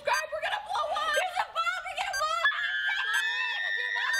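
Several girls shouting excitedly in high voices, breaking into a long, held scream together from about halfway through.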